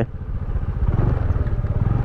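A Honda scooter's small single-cylinder engine running as it is ridden slowly over grass. The sound grows a little louder over the first second, then holds steady.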